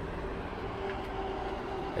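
Steady low mechanical hum with a faint, unchanging pitched tone, like a running motor or engine nearby.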